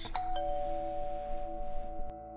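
Doorbell chime ringing a two-note ding-dong: a higher tone and then a lower one a moment later, both ringing on.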